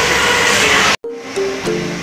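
Loud, dense noise for the first second, then an abrupt cut about halfway through to background music of plucked-string notes, like a ukulele.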